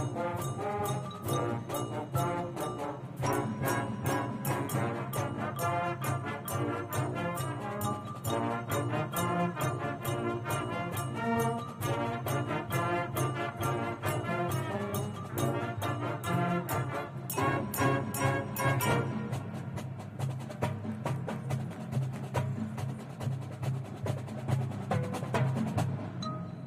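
A high school marching band playing full out: brass chords carried over a steady, driving drum beat.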